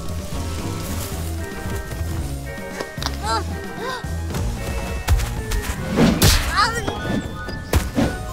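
Cartoon background music with a steady bass line, with short baby vocal sounds over it. In the second half come a few sudden whooshing hits as a storm gust sweeps through.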